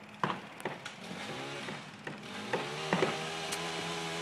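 A few light clicks and crackles, then from about halfway a small motor starts humming at a steady pitch and keeps running.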